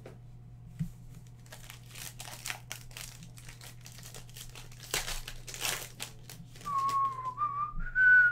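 Trading-card pack wrapper crinkling and rustling as a pack is opened and the cards are handled. Near the end a person whistles a few notes, rising in pitch.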